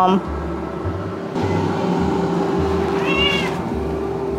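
A domestic cat meows: the end of one call at the very start and a short meow about three seconds in, over a steady low background hum.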